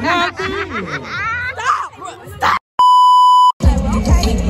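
A loud, steady 1 kHz censor bleep, under a second long and cut in with dead silence on either side, after a stretch of girls' excited voices. Music with a heavy beat starts right after it, near the end.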